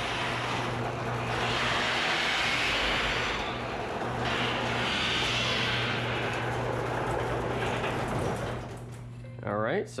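Chamberlain LiftMaster Professional 1/2-horsepower garage door opener running as it lifts a sectional garage door up its tracks: a steady motor hum under the noise of the moving door, dying away near the end as the door reaches fully open.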